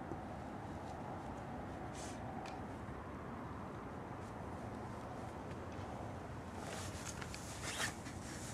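Steady outdoor hiss with a couple of brief scratches, then a burst of scratchy rustling near the end.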